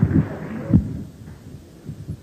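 Beatboxed bass-drum kicks into a microphone: a few deep thumps that drop in pitch in the first second, over a hiss that dies away, then a quieter gap with only faint low beats.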